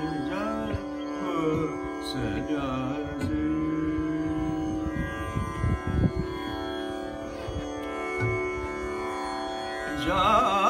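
Male voice singing a slow vilambit khayal in Raga Bairagi, with gliding phrases over the steady drone of a plucked tanpura. The voice falls away after about three seconds, leaving mostly the tanpura drone, with a few low thuds around the middle.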